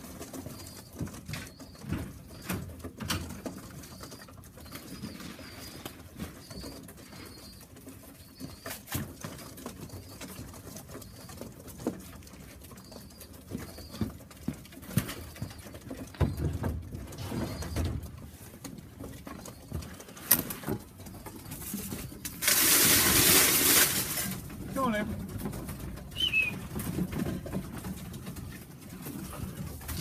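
Tippler pigeons cooing in the loft, with scattered knocks and shuffles on the woodwork. About two-thirds of the way through comes a loud rushing rattle lasting about a second and a half.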